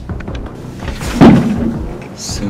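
Suspense film score, with one loud, heavy thud a little past a second in that dies away over about half a second.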